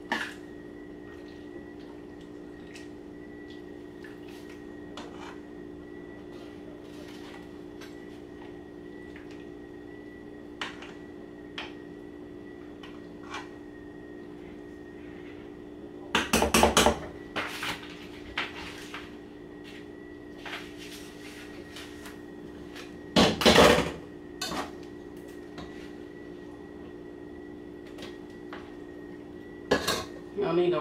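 A spoon scraping and clinking against a pot and a plate as food is served, loudest in two short spells about 16 and 23 seconds in, with a few light clicks between. A steady hum runs underneath.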